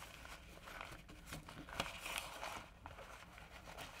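Faint rustling and crinkling of paper letters being handled as a ribbon is tugged at, with a few brief sharper crackles.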